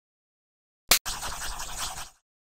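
Cartoon sound effect: a sharp click about a second in, then about a second of rapid, rasping noise that stops abruptly.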